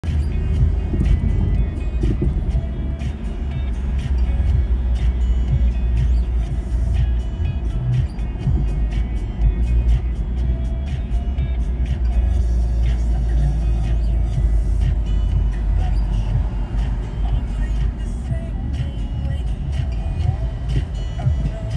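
Steady low rumble of a car driving through city streets, heard inside the cabin, with music playing over it. The sound begins abruptly at the start.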